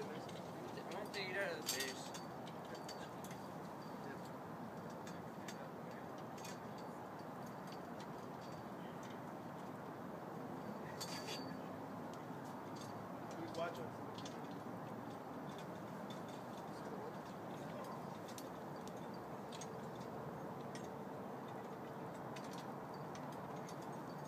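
Steady low background hiss, with a few brief faint voices and scattered light clicks.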